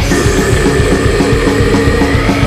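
Old-school death metal: fast, dense drumming under distorted guitars and bass, with a long held high note coming in at the start and bending near the end.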